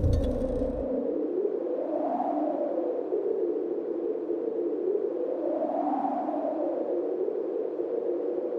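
Dayton Audio 21-inch subwoofer, driven by a QSC amplifier in bridge mode, playing an electronic tone that slowly rises and falls in pitch twice. The deep bass drops away about a second in, leaving the warbling tone.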